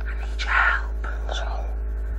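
A person whispering briefly, in two short breathy bursts, over a steady low hum.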